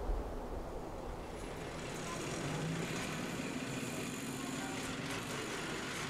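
Steady city traffic noise: a busy road with cars and trucks passing.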